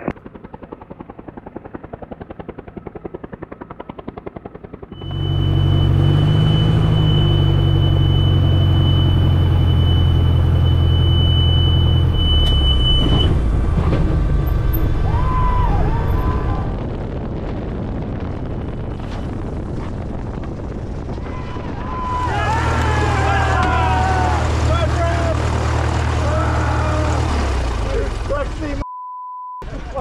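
Carbon Cub single-engine light aircraft's engine and propeller running loud and steady in two long stretches. A steady high-pitched whistle sits over the first stretch, and voices over the second.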